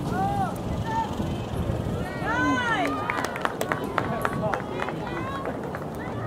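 Soccer players and spectators shouting short calls across the field, the loudest about two and a half seconds in. A quick run of sharp clicks comes in the middle, over steady outdoor noise.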